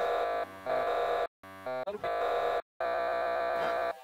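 Digital audio glitch: a tiny slice of sound frozen and looped into a held, stuttering tone, broken twice by sudden cuts to silence.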